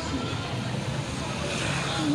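A car driving past close by on a street, with steady engine and tyre noise that grows a little louder near the end.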